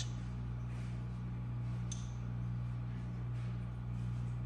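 A steady low electrical hum, with a single faint click about halfway through.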